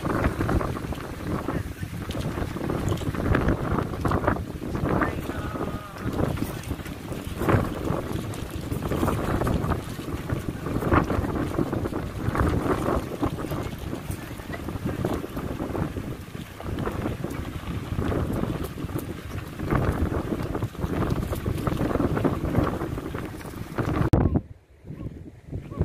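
Strong gusty wind buffeting the phone's microphone, a low rumble that swells and drops with each gust.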